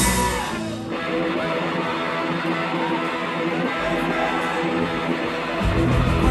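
Live ska-punk band: the drums and bass drop out and an electric guitar plays on its own, with a brief low hit about four seconds in, before the full band comes crashing back in near the end.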